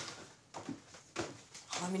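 Footsteps climbing wooden stairs: a few separate, unevenly spaced knocks on the treads.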